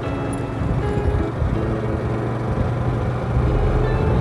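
Steady engine and road noise from a moving vehicle on a paved road, a constant low hum, with faint background music.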